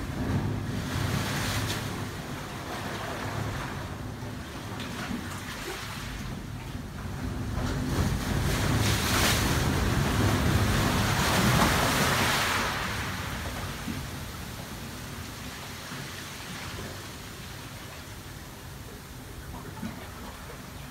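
Ocean waves surging through a narrow rock channel into a sea cave as a rush of water. It swells to its loudest about ten seconds in and then falls back.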